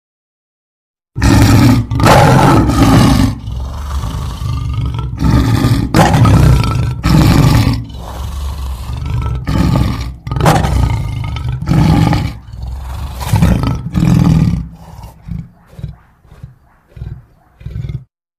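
A lion roaring. After about a second of silence comes a bout of long, loud roars, which give way to shorter, quieter grunts that taper off near the end.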